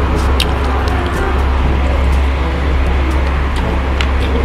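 Steady low rumble of background noise, with a few faint clicks of chewing and of grilled chicken being pulled apart by hand.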